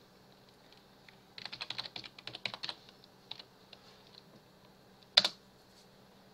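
Computer keyboard typing: a quick run of keystrokes from about one and a half to nearly three seconds in, a few scattered taps, then one much louder single key press about five seconds in, the Enter key sending a typed chat command.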